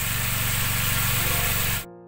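Sauce and chicken feet sizzling in a hot wok, a steady hiss over a low, fast-pulsing hum. It cuts off suddenly near the end, leaving soft music.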